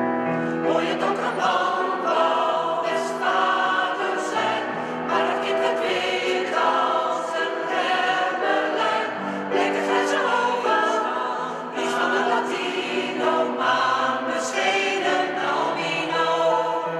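Mixed choir of men and women singing together.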